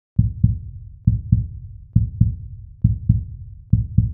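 Heartbeat sound effect: five deep double thumps (lub-dub), a little under one a second.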